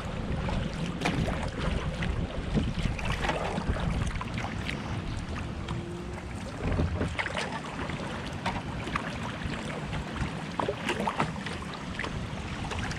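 Water splashing and trickling against a kayak's hull as it moves down a shallow river, with irregular short splashes over a steady low rumble.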